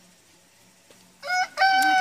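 A rooster crowing, starting about a second in: a short note, then a long held note.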